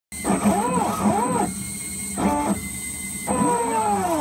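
Stepper motors of a hobby CNC laser engraver driving the laser head along its path, whining in short pitched tones that rise and fall as each move speeds up and slows down. The tones stop for a moment twice, about a second and a half in and again about two and a half seconds in.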